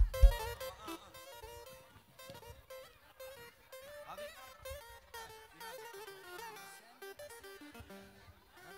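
Live band music with a quick, ornamented melody line. A loud knock comes at the very start.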